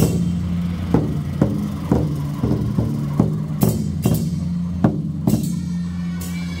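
Large red Chinese barrel drum beaten with two wooden sticks, about two strikes a second, some strikes sharper and brighter in the second half. A steady low drone runs underneath.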